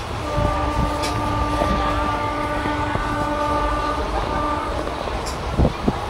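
A train horn sounds one long steady blast of about four and a half seconds over the constant low rumble of a train running on the track. A couple of sharp thuds follow near the end.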